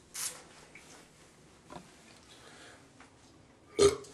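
A man's short, loud burp near the end, after a brief breathy exhale right at the start.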